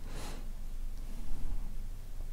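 Quiet room tone, a faint steady hiss over a low hum, with a soft intake of breath just after the start.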